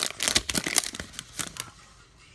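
Foil wrapper of a Pokémon booster pack crinkling and crackling as the torn-open pack is handled and the cards are slid out, a quick run of sharp crackles that dies down after about a second and a half.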